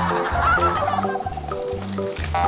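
Background music with steady, repeating bass notes, and a short warbling, wavering tone about half a second in.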